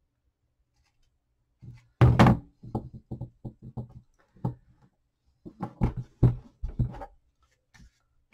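Knocks and thunks of craft items being handled and set down on a tabletop. The loudest clatter comes about two seconds in, followed by a string of lighter knocks, and another run of knocks starts at about five and a half seconds.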